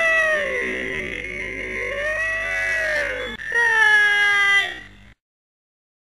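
Three drawn-out wailing cries, each rising and then falling in pitch, the last one cutting off suddenly about five seconds in.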